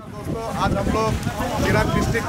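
A man talking, with wind buffeting the microphone as a heavy low rumble under his voice.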